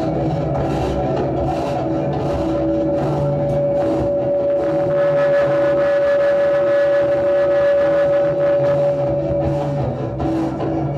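Loud live experimental drone music: a dense, noisy wash with regular hissing hits in the first few seconds. A single high sustained note is held from about three seconds in until just before the end.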